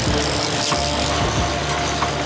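Fishing boat's engine running steadily under way, with a faint haze of wind and water.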